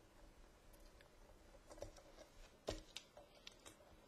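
A few faint clicks and small scrapes of a hex screwdriver turning the tiny screws of a vape mod's back cover, the sharpest click a little under three seconds in.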